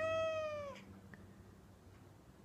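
Mackerel tabby cat meowing once, a short call that falls slightly in pitch and ends within the first second.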